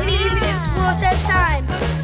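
Children's pop song: a bouncy bass-and-drum backing under high sung vocals whose pitch arches up and slides down.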